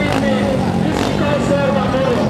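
A loud voice with long, wavering held notes, over a vehicle engine running.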